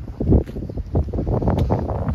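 Wind buffeting the phone's microphone outdoors, a gusting low rumble that swells and drops.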